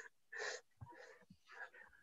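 A short, faint breathy laugh about half a second in, then near silence with a few tiny clicks.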